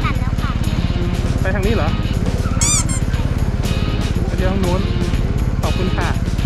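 Motorcycle engine idling with an even, steady low pulse, under children's voices.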